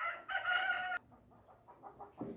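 A rooster crowing once, a call of about a second with a short break early in it, heard over low background.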